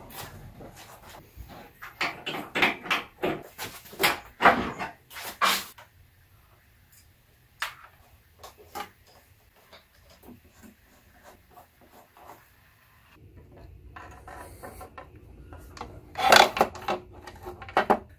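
Clunks, knocks, scrapes and rubbing of hard plastic and metal telescope-base parts being handled as the azimuth drive housing is unscrewed and opened. The sounds come thick in the first few seconds, thin out in the middle and bunch into louder knocks near the end.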